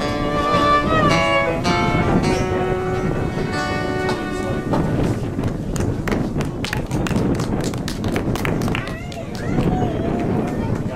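Fiddle and acoustic guitar playing the final bars of a folk song, ending on a held note about halfway through. A small audience then claps for about four seconds, and a voice speaks near the end.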